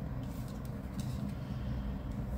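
Tarot cards being handled and laid down on a mat: a few faint taps and slides, over a steady low rumble.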